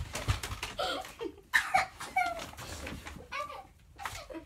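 Indistinct children's voices in short exclamations rather than clear words, over low handling rumble, with a thump about a third of a second in.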